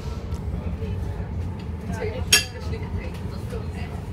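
Steady low rumble of a Sprinter commuter train running, heard from inside the carriage, with one sharp clink about two seconds in.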